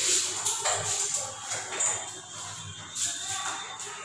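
Irregular rustling and scuffling noises, several short bursts, with faint music in the background.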